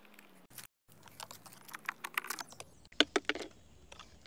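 Hand screwdriver turning a screw into the hard plastic rear rack of a ride-on toy motorcycle, making clusters of small sharp clicks and scrapes about two and three seconds in.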